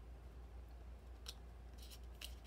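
Faint paper handling: patterned paper circles being lifted and shifted on a sketchbook page, with a light click a little past a second in and a brief rustle near the end.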